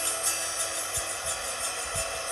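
Acoustic guitar notes left ringing and slowly fading in a pause between strums, over a steady hiss.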